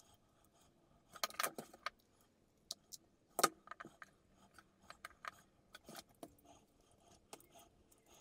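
Handling noise of small parts being fitted together: a 3D-printed plastic case, tactile switches and a metal key ring give irregular light clicks, taps and rattles. A cluster of clicks comes about a second in, and a sharper single click about three and a half seconds in.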